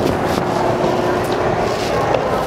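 Steady background noise of a room, with no distinct event standing out.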